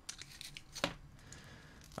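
Pliers clicking and scraping faintly against a soldering iron's tip as it is pushed back into the iron, whose worn thread no longer holds the tip. A few sharp clicks, the clearest a little under a second in.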